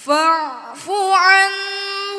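Melodic Quran recitation (tilawah) chanted by a high solo voice. It enters right after a pause with a gliding, falling phrase, then a long held note with a small ornamental turn.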